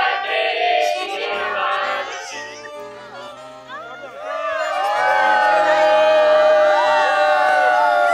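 Background music with steady low notes under a group of people cheering and shouting, the cheering loudest in the second half.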